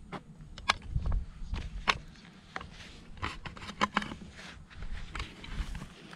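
Footsteps and handling noise from a man walking through scrub while carrying a scoped air rifle with a camera mounted on it: irregular soft thumps with scattered clicks and knocks.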